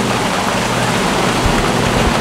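Rain falling on a sailing yacht in a squall: a steady, loud hiss, with a brief low rumble of wind about one and a half seconds in.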